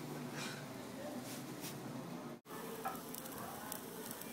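Steady sizzling hiss of a wood-fired pizza oven, with a pizza baking on the oven floor beside the burning fire. The hiss drops out for a moment a little past halfway.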